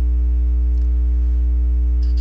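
Loud, steady electrical mains hum: a low drone with evenly spaced buzzing overtones that does not change.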